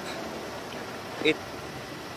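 Steady outdoor background noise, an even hiss with no distinct machine rhythm, during a pause in talk. One short spoken word about a second in.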